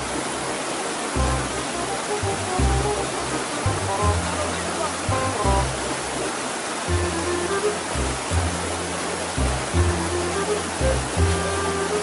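Rushing white water of a fast mountain river, a steady rush of noise, with background music over it: a pulsing bass line and a light melody.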